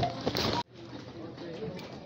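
Phone handling noise and the rattle of a loaded metal shopping cart being pushed, cut off abruptly about half a second in. After that, a quieter grocery-store background with faint distant voices.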